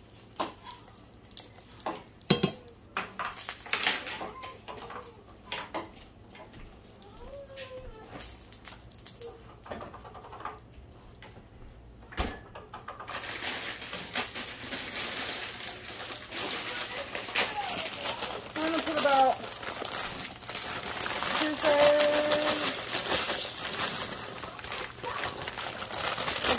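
Stovetop cooking sounds: a few clinks and knocks of kitchenware and faint voices in the background, then from about halfway a steady hiss from the pans heating on the electric stove, growing louder.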